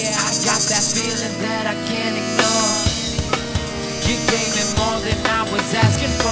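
Upbeat live band music with a drum kit keeping the beat under pitched melodic lines.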